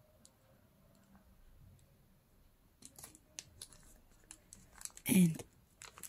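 Paper and card being handled and pressed onto a journal page: quiet at first, then a scattering of small clicks and taps from about halfway. Near the end a brief voiced sound from the person, louder than the handling.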